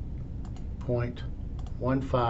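Scattered sharp computer mouse clicks as digits are entered one by one on an on-screen keypad, with a man's voice briefly reading out digits about a second in and again near the end.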